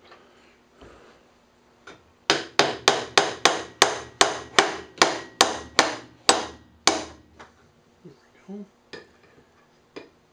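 A run of about fourteen sharp metal taps, about three a second and slowing slightly at the end, driving a thin steel blade down into a glued slot in a wooden handle so it seats on the bottom.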